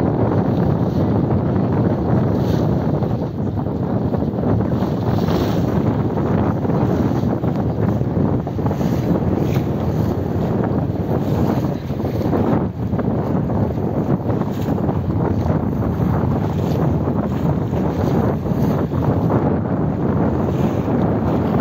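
Wind buffeting the microphone on the deck of a car ferry crossing the Danube: a loud, steady rushing noise that flickers in strength throughout.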